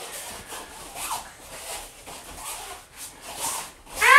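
Irregular rubbing and rustling from the phone being handled against clothing close to its microphone.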